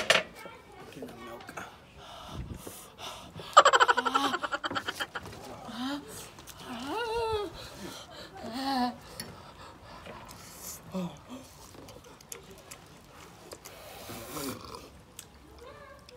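A sharp knock at the very start, then wordless vocal reactions to the burn of very spicy noodles: a loud, rapid stuttering burst of laughter that fades out, followed by wavering moans and short voiced gasps.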